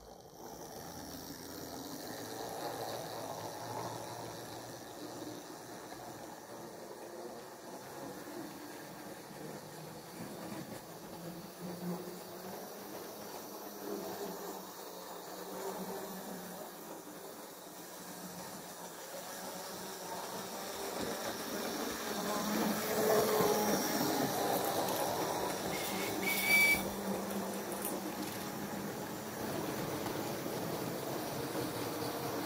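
Model railway train running on its track: motor hum and wheels on the rails, growing louder as a string of goods wagons passes close by in the later part, with a sharp click near the end.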